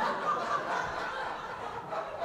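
Several people laughing together in a steady, continuous chuckle.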